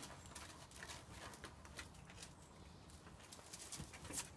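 Faint, irregular light taps and scuffles of a Border Collie puppy's paws and claws moving over hard ground.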